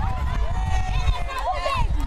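A woman talking into a handheld microphone, over a steady low rumble.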